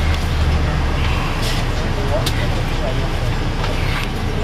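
Cabin of an MCI D4000 coach bus: a steady low engine and road rumble, heavier for the first second or so, with two brief sharp clicks or rattles around the middle.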